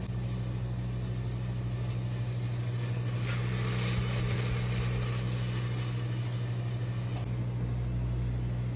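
Steady low hum of a commercial kitchen exhaust hood fan running over a gas range, with a faint hiss that swells about three to four seconds in.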